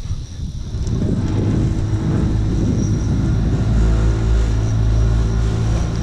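A boat's motor put into forward gear: its low hum builds about a second in, then runs steadily.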